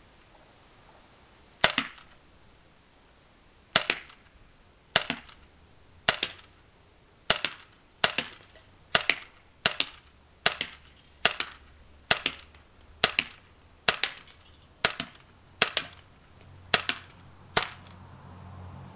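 HK USP CO2-powered airsoft pistol firing about seventeen sharp shots, roughly one a second and a little quicker after the first few, each crack followed closely by a second, fainter click.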